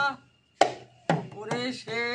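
Baul folk song with a small hand drum: the sung phrase ends, there is a brief pause, then two sharp drum strokes about half a second apart, and the singer's voice comes back in near the end.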